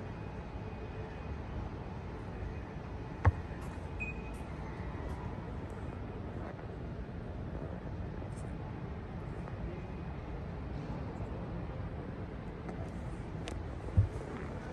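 Steady background noise of a large airport terminal hall, a low rumble with hiss above it. A single sharp click or knock stands out about three seconds in, and another comes at the very end.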